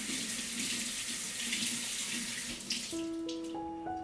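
Water running from a kitchen faucet into the sink as an avocado is rinsed by hand. The water stops about three seconds in and plucked background-music notes take over.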